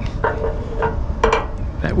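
A loose hardened steel pin rattling in its hole through an aluminium bull bar as it is jiggled by hand, giving a few metallic clinks, the sharpest just over a second in. The unbonded pin making and breaking contact as it rattled was the cause of intermittent static on an HF mobile radio's receive.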